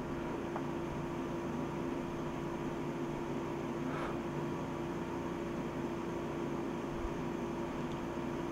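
Air conditioner running in the room: a steady hiss with a low, even hum.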